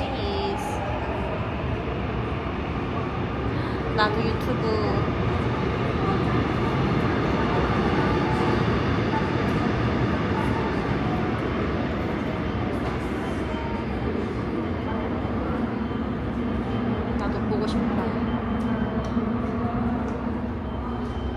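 Steady rumble of a subway train in an underground station, with a low hum coming in near the end and a single click about four seconds in.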